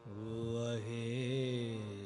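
A male voice starts a long, wordless sung note in Sikh gurbani kirtan just after the start, wavering slightly in pitch and held on, over a steady harmonium.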